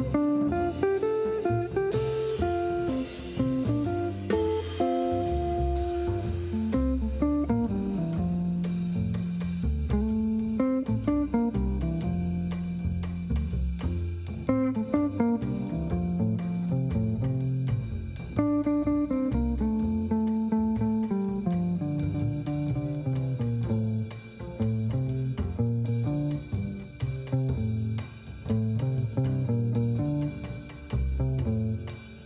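Jazz trio playing live: electric guitar carrying the melody over plucked double bass and a drum kit.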